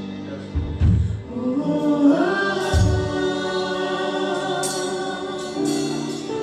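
Gospel worship music: voices hold a long "oh" over sustained chords, sliding upward about two seconds in. Deep drum hits land about a second in and again near three seconds, with cymbal splashes near the end.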